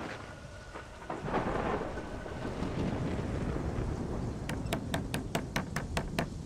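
Film soundtrack of a stormy night: steady rain with a low thunder rumble swelling about a second in. Near the end comes a quick run of sharp clicks, about five a second.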